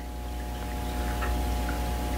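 A steady low machine hum with a faint steady whine above it, and a couple of faint soft ticks about a second in.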